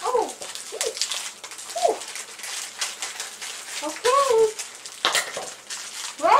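Plastic wrapper of a Pocky packet crinkling and crackling in irregular bursts as it is pulled open with difficulty.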